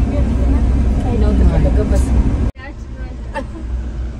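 Steady low engine and road rumble inside a moving passenger vehicle's cabin, with faint chatter from other passengers. About two and a half seconds in it drops abruptly to a quieter rumble with a few clicks.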